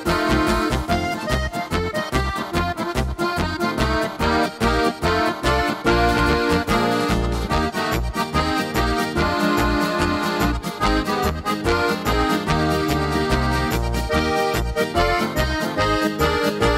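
Korg Pa5X Musikant arranger keyboard playing an Oberkrainer polka: an accordion voice played live by hand over the keyboard's automatic accompaniment style, with bass notes on a steady polka beat.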